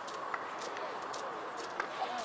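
Faint distant shouts and calls of voices at a rugby match, with two short sharp knocks, one about a third of a second in and one near the end.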